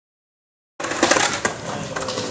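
Silence for under a second, then a steady rush of outdoor noise with a few sharp knocks: skateboards rolling and clacking on concrete.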